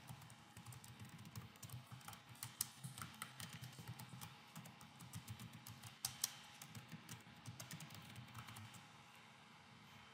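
Faint typing on a computer keyboard: quick, irregular keystroke clicks that stop a little before the end.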